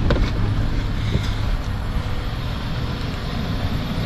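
Car engine idling with a steady low rumble, with a few sharp clicks and knocks in the first second or so.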